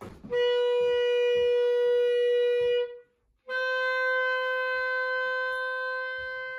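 Solo clarinet playing two long held notes, with a short break for breath about three seconds in.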